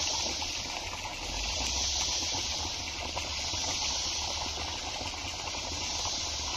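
Steady hissing background noise with a low rumble underneath, with no distinct events and no change in level.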